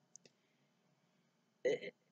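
A pause in a woman's talk: near silence apart from one tiny faint click just after the start. A short bit of her speech comes in near the end.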